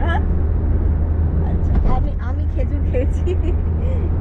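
Steady low rumble of road and engine noise inside a moving car's cabin, with women's voices chatting over it.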